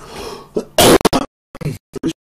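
A man coughing into his hand: one loud, harsh cough just under a second in, followed by short broken sounds with dead-silent gaps between them.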